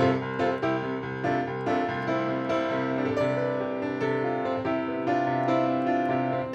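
Piano music, a steady run of notes played at an even pace.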